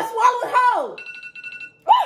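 A countdown timer alarm going off about a second in: a rapid electronic beeping on two steady high tones, signalling that the two minutes are up. A loud rising shout cuts in near the end.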